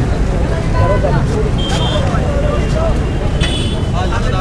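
Chatter of a crowd of young men talking over one another outdoors, over a steady low rumble.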